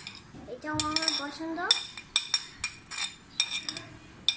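Metal cutlery scraping and clinking against ceramic plates as food is pushed off one plate onto a plate of rice. A quick run of sharp clinks fills the second half.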